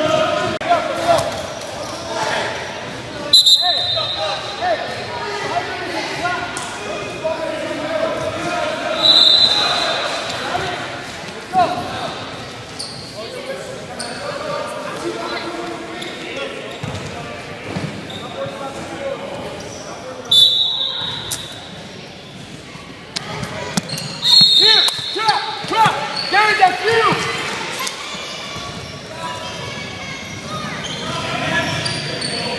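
Echoing gym sound of a youth basketball game: voices and chatter from players and spectators, a basketball bouncing, and four short, high referee whistle blasts, about 3, 9, 20 and 24 seconds in.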